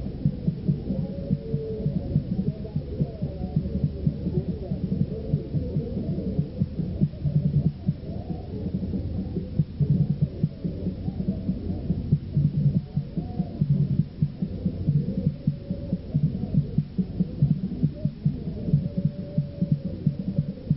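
Muffled, dense low thumping, many beats a second, with a blur of voices over it, on a dull-sounding old recording.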